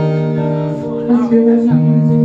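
Live tango accompaniment of bandoneón and guitar, the bandoneón holding sustained chords that change pitch about halfway through.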